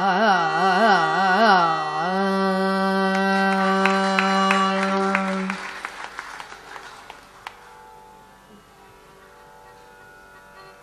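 Female Carnatic vocalist singing richly ornamented phrases with wavering, oscillating pitch, then holding one long note for a few seconds as the piece closes. A run of sharp strikes sounds under the held note, and the music then fades to a low hush.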